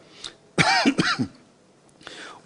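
A man clearing his throat: two quick rough rasps about half a second and a second in, each dropping in pitch.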